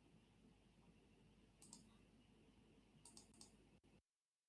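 Near silence with a few faint computer mouse clicks: one a little before halfway, then a quick cluster of two or three near the end.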